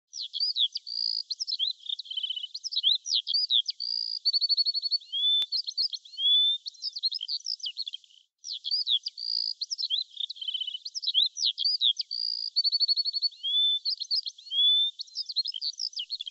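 Birdsong: quick chirps, slurred whistles and fast trills, high-pitched and clean. The song breaks off briefly about halfway through, then the same passage plays again.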